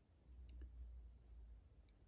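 Near silence, with a faint low rumble and a few tiny, faint clicks, like handling noise.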